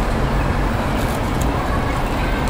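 Steady road traffic noise: a continuous low rumble with no single event standing out.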